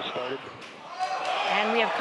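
Speech: a launch commentator's voice on the broadcast, with a brief quieter lull about halfway through.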